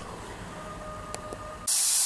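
Faint room tone with two light ticks, then a loud, steady hiss that starts abruptly near the end.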